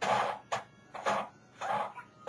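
Angled brow brush stroking over an eyebrow close to the microphone: short scratchy brushing strokes, about two a second.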